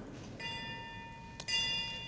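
A bell struck twice, about a second apart, each strike ringing on and fading.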